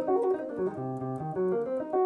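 Clean-toned electric jazz guitar sweep-picking a C half-diminished (Cm7b5) arpeggio as a steady run of single notes, about four a second.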